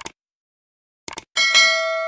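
Subscribe-button animation sound effects: a short click, a quick double click about a second later, then a bright bell chime for the notification bell that rings on and slowly fades.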